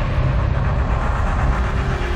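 Deep, steady rumble with a hiss over it, a cinematic sound-effect bed for an animated logo; a low hum comes in near the end.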